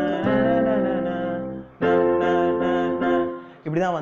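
Yamaha portable keyboard on its grand piano voice playing two sustained chords, the second struck about two seconds in and fading away near the end.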